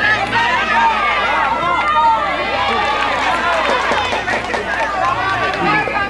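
Many voices shouting and calling out over one another without pause: spectators at a youth football match.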